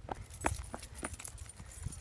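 Faint jingling clinks of a bunch of keys on a lanyard swinging while walking, a light click every half second or so, over a low rumble of wind on the microphone.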